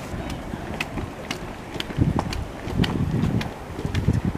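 Wind buffeting the microphone in low gusts, with footsteps ticking about twice a second as people walk.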